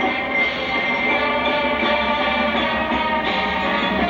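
High school marching band playing, holding long sustained chords at a steady volume. It is heard as an old videotape recording played back on a television.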